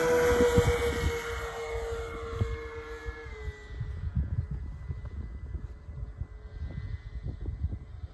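Twin motors and propellers of a Nexa OV-10 Bronco RC model plane taking off: a steady high whine that drops a little in pitch about three seconds in and fades as the plane climbs away. Wind rumble on the microphone runs underneath.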